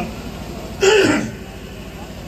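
A man clears his throat once into a microphone, a short rasp with a falling pitch, about a second in.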